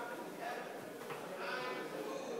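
A man's voice, faint and drawn out, in short wavering sounds without clear words.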